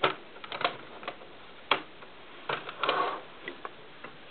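Plastic Lego model being handled and moved on a desk: scattered sharp clicks and knocks of its pieces, with a brief busier run of clicking about two and a half seconds in.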